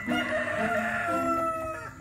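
A rooster crowing once, a long call with a slightly falling pitch, over light background music.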